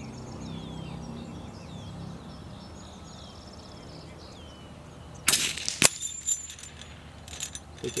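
A CZ-455 Trainer .22 LR bolt-action rifle fires one shot about five seconds in. About half a second later comes a sharp ping with a brief high ring as the bullet strikes a small hanging steel plate at 75 yards.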